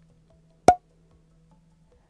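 A single short, sharp tap with a brief pitched ring, about two-thirds of a second in, amid near quiet.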